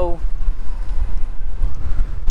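Gusty wind buffeting the microphone, a loud low rumble that flutters unevenly, as the wind picks up ahead of a storm.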